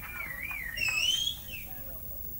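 A person whistling from the crowd in one wavering, high tone that glides up and down, climbs near the middle and then falls away, with a few faint clicks around it.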